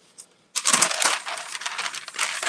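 Sheets of paper rustling and crinkling as they are handled and folded over a sublimation transfer on a heat press, starting about half a second in after a moment of quiet.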